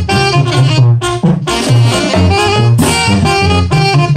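A tamborazo zacatecano band playing live and loud: saxophones and trumpets carry the melody over a bass line that alternates between two low notes, with a steady drum beat. The music drops out for a moment about a second in, then carries on.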